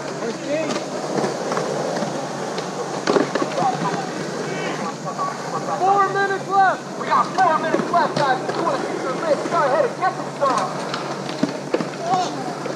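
Skateboard wheels rolling on concrete, with a few sharp clacks of the board in the first few seconds. Several voices call out over it from about midway on.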